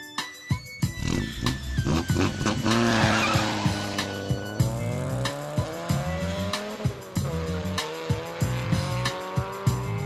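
A car sound effect, an engine revving with its pitch rising and falling in long sweeps, over music with a steady beat of about two strokes a second.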